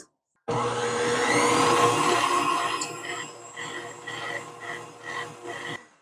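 Electric stand mixer switched on about half a second in, its whisk beating powdered sugar into whipped egg whites for royal icing on low speed. It gives a steady motor hum with a light rhythmic tick about twice a second, louder for the first couple of seconds, then quieter until it stops just before the end.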